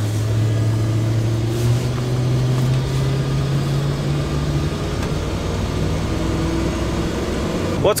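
Engine and road noise inside a Dodge Ram 1500 pickup's cab while driving: a steady low drone that rises slowly in pitch for about four seconds as the truck gathers speed, then settles.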